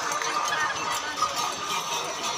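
Mixed voices of an outdoor crowd, talking and calling over one another with no single voice standing out.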